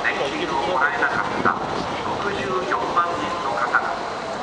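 Election campaign speech over a loudspeaker, with a steady hum of city street noise under it.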